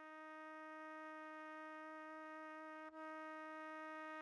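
Close-miked trumpet holding one steady note, played back quietly, with a brief catch about three seconds in.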